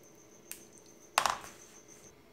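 A spoon moving through cooked pequi and broth in a plastic bowl: a small tap about a quarter of the way in, then a louder, short clattering scrape just past the middle.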